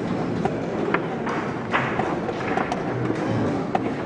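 Sharp wooden clicks and knocks of chess pieces being set down and chess-clock buttons pressed during a fast game, irregular, about one every half second, over a steady background murmur.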